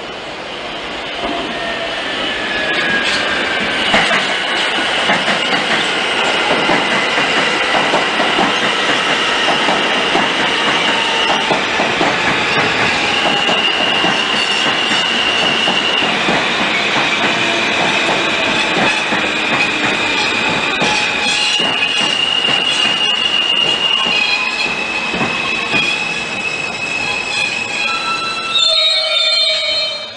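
NYC Subway N train of stainless-steel cars passing close by, wheels squealing on the rails with a high-pitched squeal that shifts pitch in steps, over steady rumble and clicks from the rail joints. It gets louder about a second in as the train draws level and stays loud.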